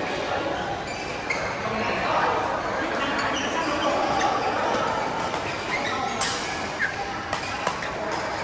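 Badminton rackets hitting a shuttlecock: sharp clicks, several of them in the second half, over a steady background of players' voices in a large hall.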